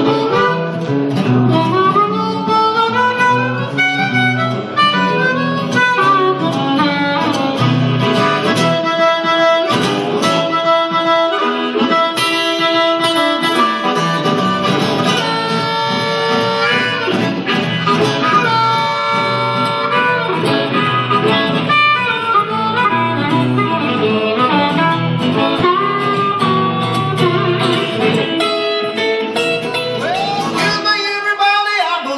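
Blues harmonica solo, played into a handheld microphone, with bending, wailing melodic lines over an acoustic-electric guitar accompaniment.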